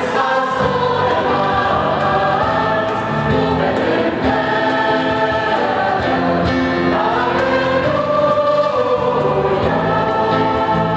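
A choir singing a slow church hymn in long held notes, over a low sustained accompaniment.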